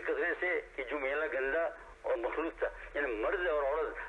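Only speech: a man preaching in Urdu and quoting Arabic Quran verses.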